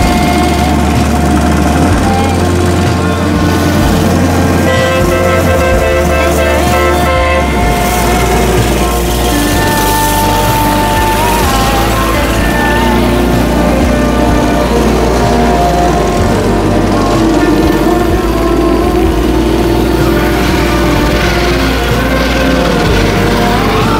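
Small engines of a parade of minibikes, mopeds and scooters running as the riders putter past, mixed with background music.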